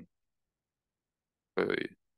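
Silence for about a second and a half, then a man says a short "uh".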